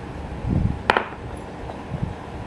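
A wrench and a small brass valve cap are set down on a wooden workbench: a soft thump about half a second in, then a single sharp metallic clink with a short ring.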